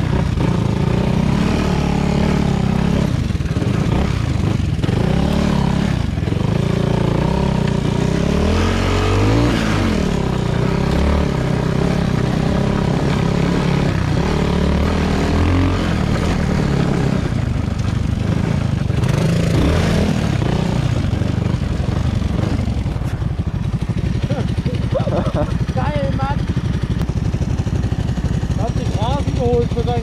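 2017 Honda Grom's single-cylinder 125 cc four-stroke engine running through an Arrow X-Kone exhaust, revving up and down as the bike rides a muddy trail. It eases to a lower, steadier note in the last several seconds.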